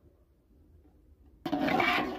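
A short rush of water in an aluminium pot of rice being washed, starting suddenly about a second and a half in.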